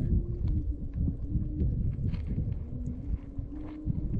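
Small scattered clicks and knocks of coral rubble and a plastic colander being worked by hand in shallow tide-pool water, over a low rumble and a faint steady hum.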